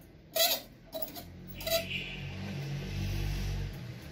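Clothes hangers clicking and sliding on a metal wardrobe rail as hanging clothes are pushed along and rearranged: three sharp clicks in the first two seconds, the loudest about half a second in. This is followed by a longer rustle of fabric being handled.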